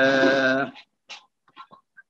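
A man's drawn-out, level-pitched hesitation sound, one held vowel that ends under a second in, followed by a few faint clicks of computer keyboard keys as a class name is typed.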